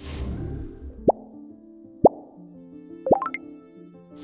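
Background music with a subscribe-button sound effect over it: a whoosh at the start, two sharp rising pops about a second apart, then a quick run of rising blips near the end.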